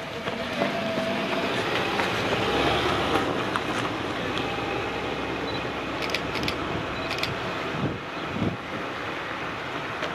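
A small car passing on an asphalt road, its engine and tyre noise swelling over the first few seconds and then easing as it drives away. A few sharp clicks come about six to seven seconds in.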